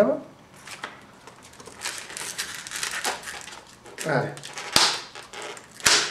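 Hands working inflated latex modelling balloons, fingers rubbing and gripping the twisted bubbles while trying to split the middle bubble free, with a few sharp clicks, the last two near the end.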